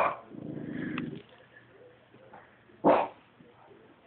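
Small dog, a Lhasa Apso, barking and growling: a sharp bark at the start, a low growl for about a second, then another single bark about three seconds in.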